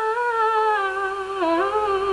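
A young woman's solo voice holding one long sung note on "no", with vibrato, drifting slowly down in pitch and dipping about a second and a half in, over a piano backing track.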